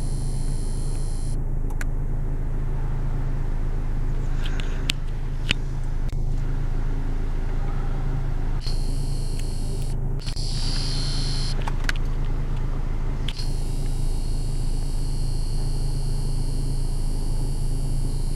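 Idling vehicle engines, a steady low drone heard from inside a car, with a high hiss that comes and goes several times and a few light clicks.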